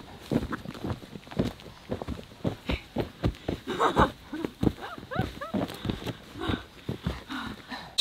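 Rubber wellington boots stomping and jumping on loose bare dirt to compact the soil: an irregular run of dull thuds, several a second.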